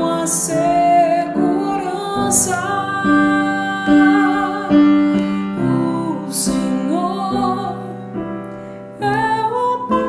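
A woman singing a slow psalm verse in long held notes, accompanied by sustained chords on an electronic keyboard.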